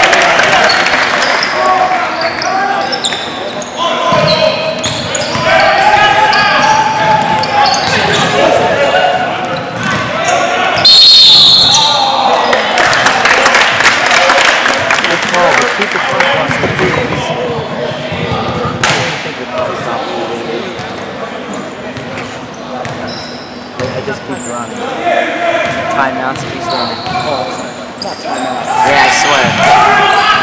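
Basketball being dribbled and bounced on a hardwood gym floor during play, with players' and spectators' voices echoing through the gym. About eleven seconds in, a short shrill whistle blast is the loudest sound.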